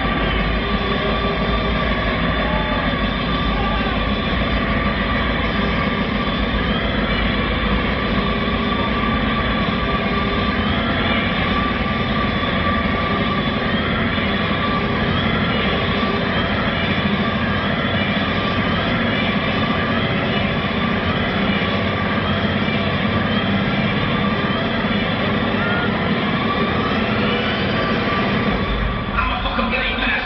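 Hardstyle dance music played very loud over an arena sound system and recorded from the crowd: a dense, steady wall of heavy bass with held synth tones on top. It shifts near the end.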